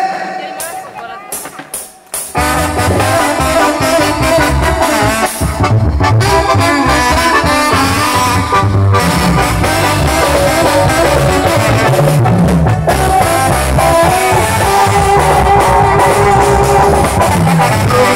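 A live band starts a song about two seconds in: an instrumental intro with drums, a steady bass beat and a horn carrying the melody.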